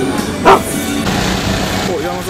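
Background music with a short, loud sound about half a second in.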